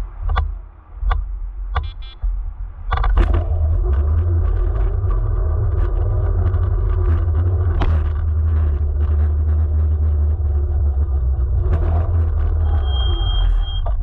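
Electric scooter rolling over rough asphalt, picked up by a camera mounted next to the wheel: a few sharp knocks in the first two seconds, then from about three seconds a loud steady tyre rumble with scattered clicks. About eight seconds in there is a sharp thud as the low-mounted camera strikes a traffic cone. A brief high steady beep sounds near the end.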